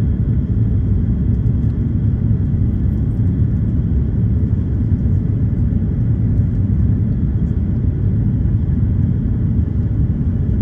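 Steady low rumble of jet engines and rushing air heard inside an airliner cabin in flight.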